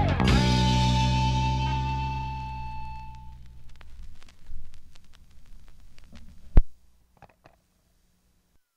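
The last chord of a garage-rock song, electric guitars and bass, struck once and left to ring and fade over about four seconds. Faint surface clicks from the vinyl record follow, then a single loud thump near the end before the sound cuts to silence.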